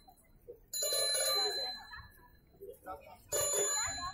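A bell ringing twice, each ring a short burst of under a second, the two about two and a half seconds apart.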